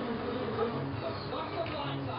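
A steady low buzzing hum, with faint murmuring in the background.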